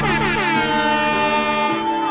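A DJ mix transition effect over the music: a bright, horn-like sound with many tones sweeping down in pitch together, then settling into a held chord. The bass drops out from about half a second in.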